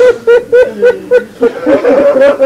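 A man's voice in a noha lament recitation, chanting a quick run of short repeated syllables, about four a second, then moving into a longer held line near the end.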